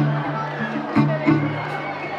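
Steel-string acoustic-electric guitar strummed in a steady rhythm through a PA, playing a song's intro, with crowd voices underneath.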